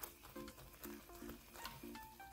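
Faint background music: a light melody of short notes repeating about twice a second.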